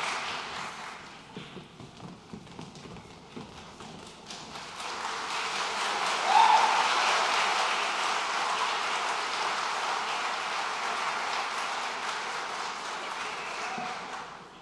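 Audience applause that thins out with scattered knocks of footsteps, then swells again about five seconds in and dies away at the end, with a brief louder shout near the peak.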